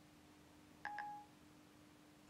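Apple iPod Touch (5th generation) speaker playing Siri's short two-note electronic chime about a second in: the tone that Siri has stopped listening and is processing the spoken request. The chime is faint.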